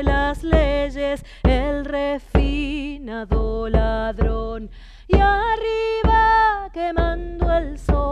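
A woman sings a slow folk song in a strong voice, holding long notes with vibrato, while beating a caja frame drum with a padded stick about once a second, sometimes with a quick double stroke.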